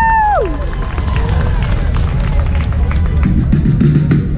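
Audience applauding a contestant's introduction, with one long high "woo" cheer in the first half-second.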